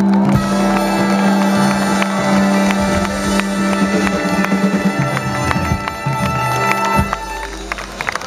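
Live band with electric guitars, drums, keyboards and a horn section playing the instrumental close of a song, with long held chords over a steady low note. The sound drops in level near the end.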